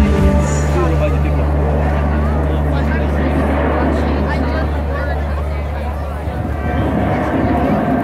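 Light-show soundtrack over loudspeakers: a low, held drone that fades out about six seconds in, under the chatter of a watching crowd.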